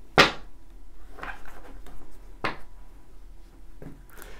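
A deck of tarot cards knocked and squared against a wooden tabletop while being cut: a sharp tap about a quarter second in, then softer taps near one second and two and a half seconds.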